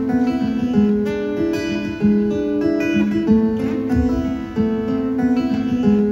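A solo acoustic guitar playing chords in a steady rhythm, a new chord struck just over every second.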